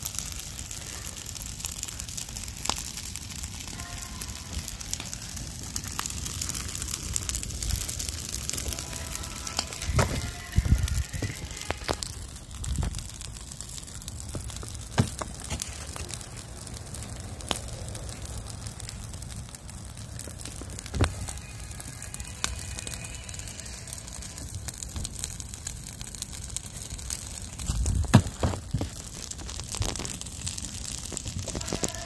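Burning pile of dry leaves crackling, with many sharp pops scattered through the steady hiss of the fire. There are low thumps about ten seconds in and again near the end.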